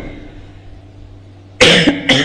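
A quiet pause with a steady low hum, broken near the end by one loud, close cough.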